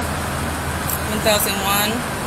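Steady roadside traffic noise with a low engine hum running underneath.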